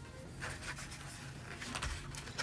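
Faint rubbing and a few soft scratchy ticks of hands handling a small plastic wireless microphone transmitter over its foam-lined carrying case.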